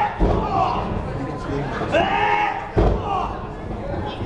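Two heavy thuds on a wrestling ring mat, about a quarter second in and again near the end, as a wrestler's body or boots hit the canvas-covered boards. Spectators shout between them.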